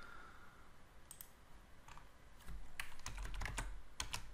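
Computer keyboard and mouse clicks while code is copied and pasted: a few scattered presses, then a quick cluster of clicks about three seconds in. A low rumble rises under the later clicks.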